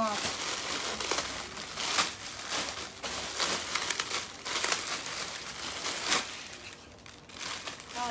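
Clear plastic bags wrapping clothing crinkling and rustling as they are handled, in irregular crackles.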